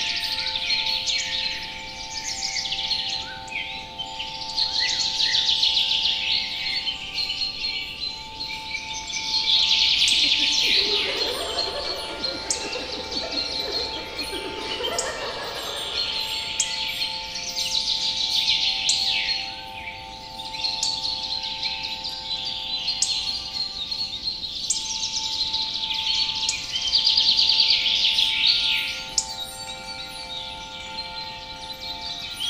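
Mixed fantasy-forest ambience: birds singing in repeated bursts of chirps and trills over a steady drone of several held tones. Now and then a brief bright chime-like tinkle sounds. A lower, busier murmur swells under the birdsong in the middle.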